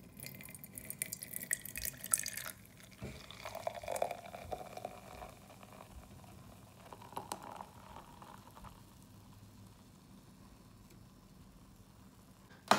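Fizzy soda poured from a can into a metal tankard, the stream splashing onto the fizz in the mug. The pour is strongest in the first couple of seconds, comes in uneven surges, and trails off after about nine seconds.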